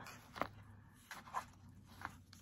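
Hands sliding and setting down a handmade paper journal, with a few faint taps and rustles of cardstock against fingers and the table.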